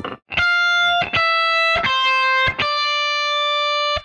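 Les Paul-style electric guitar playing four single notes in a slow, even line, F, E, C and then D high on the neck, each ringing a little under a second, the last one held.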